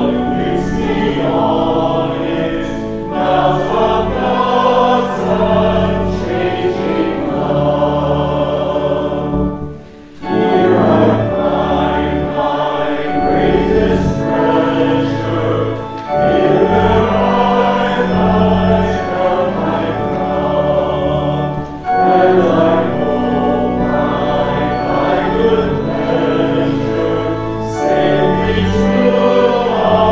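A choir singing a hymn with instrumental accompaniment, in long sustained phrases, with a short break about ten seconds in.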